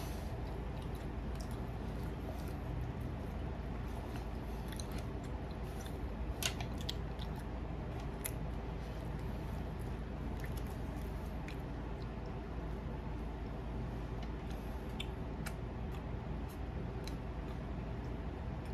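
Close-miked mouth sounds of a person chewing a biscuit: soft smacks and small scattered clicks over a steady low background hum.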